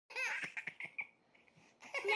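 A young child laughing: a short run of about five quick bursts that stops about a second in.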